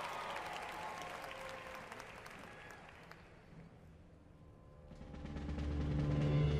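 Arena crowd applause fading away over the first few seconds. About five seconds in, the percussion ensemble's opening music begins as a low sustained swell of deep notes, growing louder.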